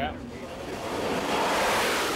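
Jet engine roar on a carrier deck swelling to a peak over about a second and a half and easing near the end, as an aircraft traps aboard.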